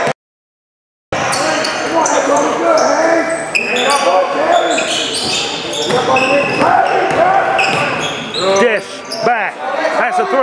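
Basketball game sounds in a gymnasium: the ball bouncing on the hardwood court under a dense, echoing din of players' and spectators' voices, with a few short squeals near the end. The sound cuts out completely for about a second near the start.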